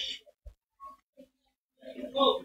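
A pause in speech filled with faint, short vocal murmurs from a person, a few scattered sounds followed by a slightly louder hum-like murmur near the end.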